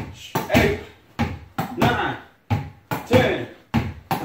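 Vo Ball boxing reflex ball bouncing and being struck with alternating hooks: sharp smacks in close pairs, about one pair every 1.3 seconds.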